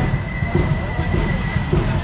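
Low rumble of a minibus engine moving slowly along a wet street, with crowd chatter around it and a steady high tone above.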